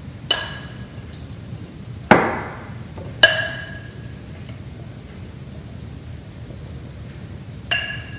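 A serving spoon knocking against a glass mixing bowl while vegetables are scooped out: four sharp clinks spread over several seconds, most of them ringing briefly, one duller knock among them.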